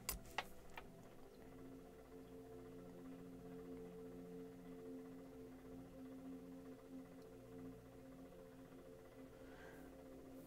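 Near silence: room tone with a faint steady hum, and a few soft clicks in the first second.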